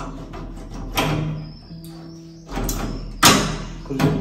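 Two sharp clacks from a hinged metal-framed folding table panel being moved and latched, one about a second in and a louder one near the end, over background music.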